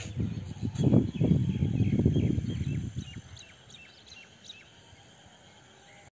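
Birds chirping in short, quick calls that fall in pitch, outdoors in the countryside. A louder low-pitched sound fills the first three seconds and then stops, leaving the chirps faint.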